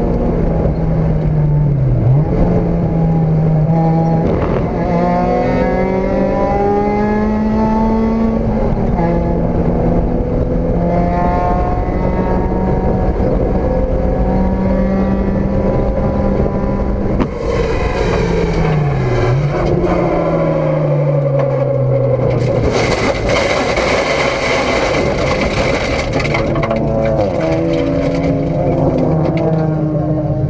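In-car sound of a Mazda Miata race car's four-cylinder engine at racing speed, its pitch climbing through the gears and falling back. The pitch dips sharply twice, about two seconds in and again near twenty seconds. Past the middle there are a few seconds of harsh rushing noise over the engine.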